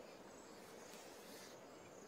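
Near silence: a faint steady hiss of river water, with faint high insect chirring over it.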